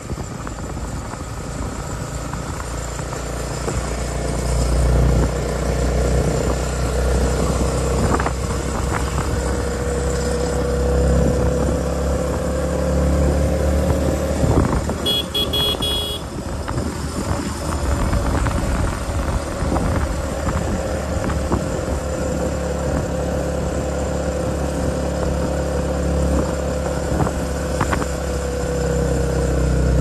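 Motorcycle engine running at a steady cruise, with wind buffeting the microphone. A brief high-pitched sound is heard about halfway through.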